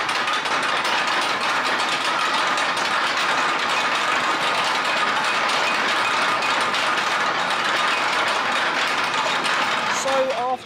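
Suspended roller coaster train climbing its chain lift hill: a fast, steady clatter of the lift chain and anti-rollback ratchet, with a faint steady whine.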